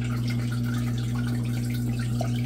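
Steady electric hum of running aquarium equipment, with a light trickle of water.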